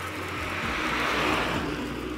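A car passing close by on the road, its tyre and engine noise swelling to a peak about a second in, then fading.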